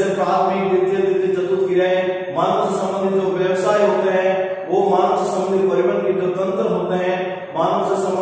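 A man's voice speaking in long, drawn-out, chant-like phrases with held vowels, a new phrase starting every two to three seconds.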